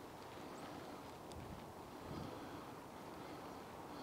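Faint outdoor ambience: a low rumble of light wind on the microphone, with a couple of faint, short high chirps.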